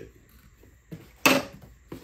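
A single sharp knock about a second in, with a faint tap just before it, from unboxed parts being handled and set down on a table.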